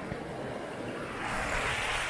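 Steady rushing of a mountain stream over rocks, growing louder and brighter about halfway through.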